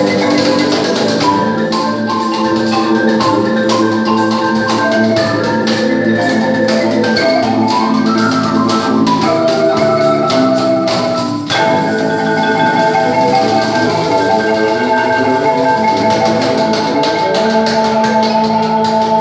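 A large wooden marimba played with mallets by two players, backed by a cajón and guitar in a live band. A quick run of rising notes comes about eight seconds in, and the music drops out for a moment about halfway through.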